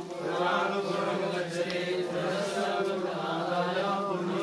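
A group of voices chanting a Vedic Sanskrit mantra together, held without a break.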